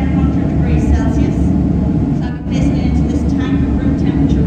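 A woman talking through a headset microphone and amplifier, over a steady low rumble that runs unbroken beneath her voice.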